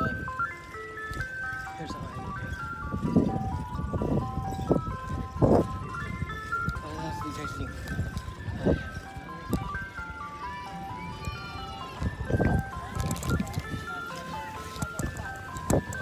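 An ice cream truck's electronic chime tune plays loud: a simple stepping melody that repeats. Several low rumbling bursts hit the microphone over it.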